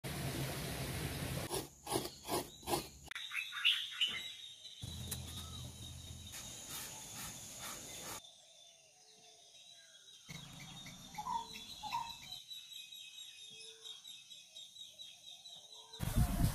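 Quiet outdoor ambience in short cut segments, with birds chirping now and then over a steady high-pitched hum. There is a quick run of sharp knocks about two seconds in.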